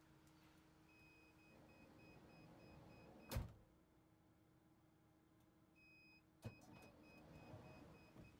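Hyundai Starex power sliding door motor-driving shut to a repeating warning beep, closing with a loud thud about three and a half seconds in. A few seconds later it unlatches with a clunk and drives open again, beeping.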